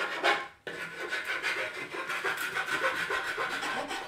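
A round file rasping the cut edge of a plywood boat-kit panel, in quick repeated scraping strokes with a short break about half a second in.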